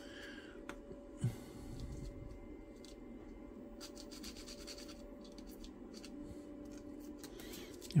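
Faint close-up handling sounds: fingers working a jute string into the glued holes of a small crate, with light rubbing, scratching and small clicks, and one light tap about a second in. A faint steady hum runs underneath.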